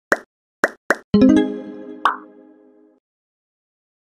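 Animated logo sting: three quick pops, then a bright musical chord that rings out and fades over about two seconds, with one more pop partway through.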